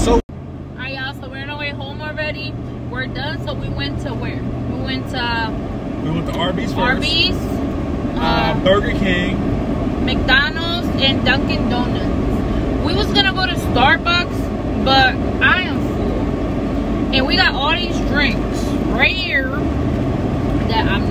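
People talking inside a car, over the steady low rumble of the vehicle's cabin; a brief dropout just after the start marks an edit cut.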